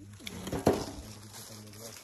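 A brief voice, then a single sharp knock or clink about two-thirds of a second in, over a steady low hum.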